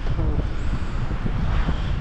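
Wind buffeting the microphone: a low, uneven rumble, with a brief voice fragment just after the start.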